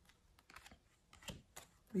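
A few faint, short clicks in a quiet room.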